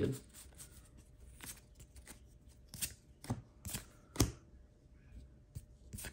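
Pokémon trading cards being worked through by hand, each card slid off the stack and flicked, giving an irregular series of sharp clicks and snaps.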